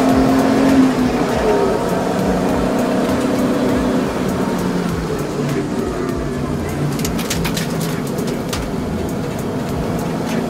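BMW E30 325i's 2.5-litre straight-six engine running, heard from inside the cabin on track. Its note falls over the first six seconds or so, and a few sharp clicks come about seven to eight seconds in.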